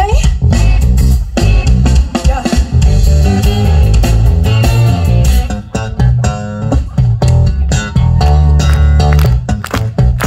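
A funk band playing live and loud, with an electric bass guitar line to the fore.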